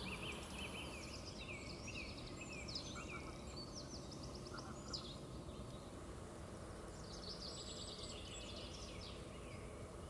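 Small songbirds chirping and twittering in quick flurries of short high notes, over a faint steady outdoor background hiss. The chirping is busiest in the first half and picks up again for a couple of seconds near the end.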